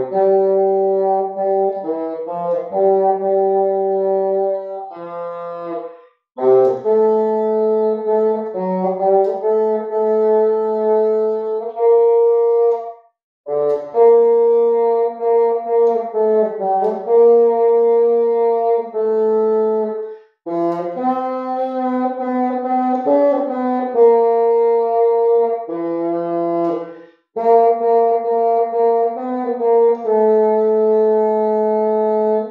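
Solo bassoon playing a slow hymn melody in long, sustained notes, in phrases broken by brief pauses for breath about every seven seconds.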